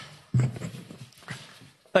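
Bumps and rustling on the podium microphone as a speaker arrives at it: a sharp knock at the start and a heavier low thump soon after, mixed with indistinct murmured speech.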